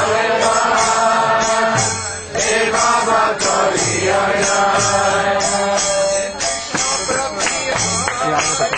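Devotional kirtan: voices chanting a mantra in long, held notes over cymbal-like strikes keeping a steady beat about twice a second. The singing drops out briefly a little after two seconds in.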